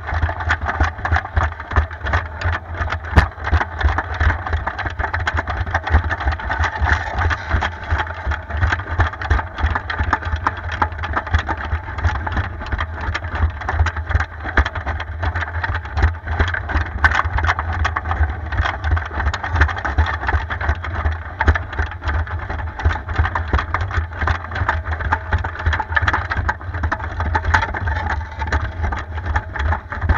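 Homemade battery-powered tracked robot driving, its drive motors and gearing running steadily with a dense rattle of the tracks, heard from a camera mounted on the robot's body.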